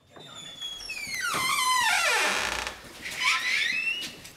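Long door creak, its pitch sliding down over about a second and a half, then a shorter rising creak near the end.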